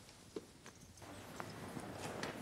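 Faint footsteps: a few light knocks of shoes on a hard floor, with a soft rustle rising from about a second in.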